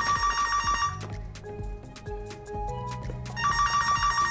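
A telephone ringing with a fast trilling ring, twice, about two and a half seconds apart, over soft background music.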